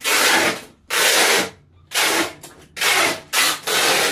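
Packing tape being pulled off a handheld tape dispenser and run along a cardboard box: six loud, ripping strokes of about half a second each, separated by short pauses.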